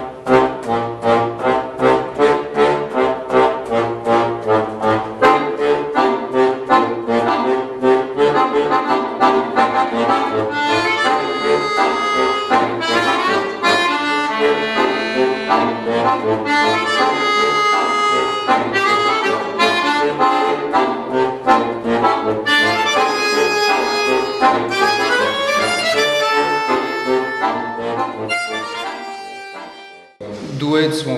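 Two accordions playing a duet: quick, even repeated chords for about the first ten seconds, then held chords under a running melody, dying away near the end.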